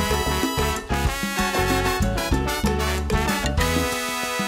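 Salsa band playing an instrumental passage, with horns over Latin percussion keeping a steady rhythm.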